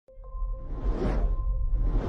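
Cinematic logo-intro sound effects: a swelling whoosh about a second in and another building near the end, over a deep rumble and a steady held tone.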